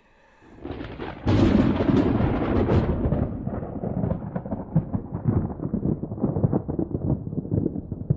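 A deep, rolling thunder rumble sound effect that fades in over the first second, then runs loud and uneven with many irregular surges.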